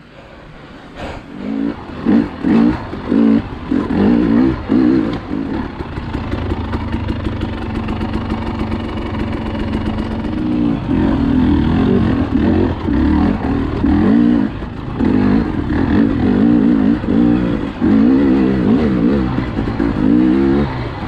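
Dirt bike engine starting out quietly, then revving in short throttle bursts about two seconds in, before running steadily with the throttle rising and falling as the bike rides over a rocky trail.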